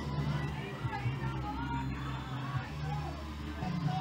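Distant racing kart engines giving a low, steady drone, with faint voices in the background.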